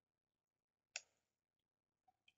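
Near silence with a single sharp click about a second in, fading quickly.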